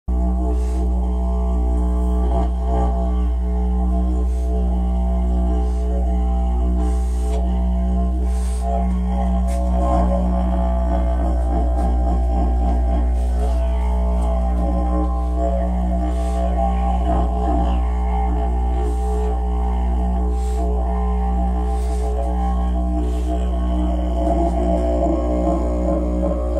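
Didgeridoo playing one continuous low drone without a break, its overtones shifting and warbling above the steady fundamental.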